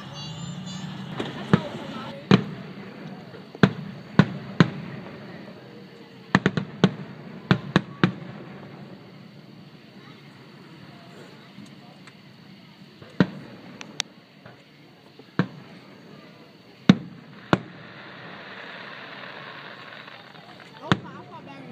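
Aerial fireworks going off: a string of sharp bangs at irregular intervals, several in quick clusters in the first eight seconds, then more spread out.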